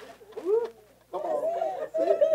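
Wordless vocal sounds: a short rising-then-falling 'ooh' about half a second in, then, after a brief pause, a wavering, drawn-out vocal tone from just past a second in.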